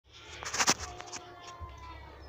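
Sharp clicks and knocks from a handheld phone being handled as the recording starts, the loudest cluster just under a second in and a few lighter ones after. A faint steady note follows as the backing music begins.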